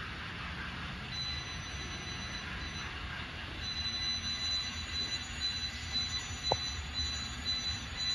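N scale model autorack freight cars rolling past on the track: a steady low rumble of wheels on rail, with a thin high wheel squeal that comes and goes in short, regular pulses. A single small click about six and a half seconds in.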